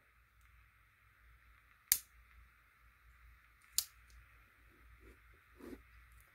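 Two sharp clicks about two seconds apart from a Spyderco Dragonfly 2 folding knife being handled, the snap of its lockback blade, with faint handling noises between.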